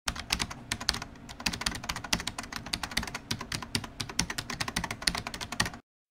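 A rapid, irregular run of sharp clicks, several a second, like fast typing on a keyboard, that cuts off suddenly near the end.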